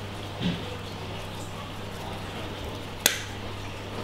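A single sharp click about three seconds in, from coral frags and tools being handled on the worktable, over a steady low hum.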